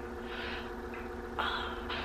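A pause in speech: a faint steady hum, with two soft breaths.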